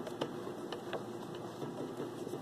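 Singer Merritt 8734 sewing machine mechanism turned slowly by hand at the handwheel: faint, irregular light clicks and ticks from the drive shaft and its gears.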